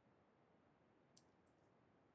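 Near silence, with two faint short clicks about a second in, a third of a second apart.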